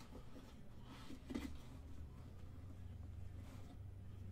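Faint handling sounds: the lid of a small cardboard box being lifted off and a plastic-cased, foam-padded trading card drawn out, with one soft knock about a second and a half in. A steady low hum runs underneath.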